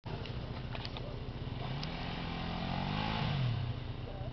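Enduro motorcycle engines running; one engine revs up about halfway through and drops back near the end.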